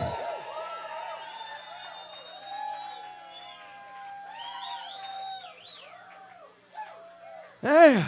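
Live club audience cheering and whooping after a song ends, many overlapping shouts of 'woo', with one loud shout near the end.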